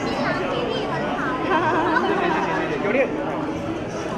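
Several people talking at once: overlapping chatter of guests and hosts around a banquet table.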